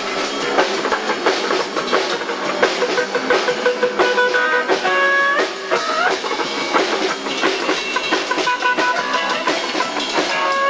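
Live rock band playing: electric guitar over a drum kit, the guitar sliding upward in pitch a few times about halfway through. The recording has almost no bass.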